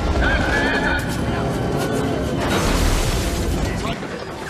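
Action-film soundtrack: dramatic score music over heavy explosion rumble and crashes, with a high wavering cry about half a second in.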